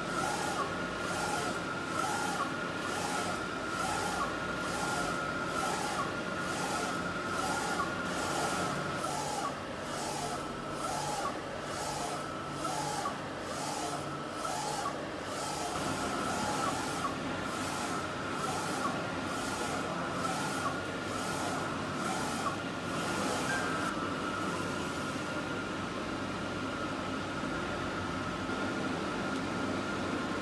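Small UV flatbed printer printing onto a headphone earcup: the print-head carriage shuttles back and forth in a steady rhythm of about one and a half passes a second, over a steady high whine from the machine. The rhythmic passes fade out near the end.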